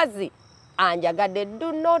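A woman speaking, with a half-second pause near the start in which a high, steady insect trill shows through.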